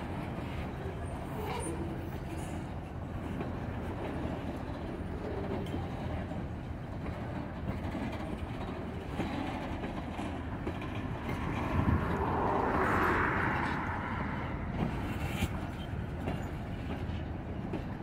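Freight train of tank cars rolling slowly past, a steady rumble of steel wheels on rail that swells louder for a couple of seconds just past the middle.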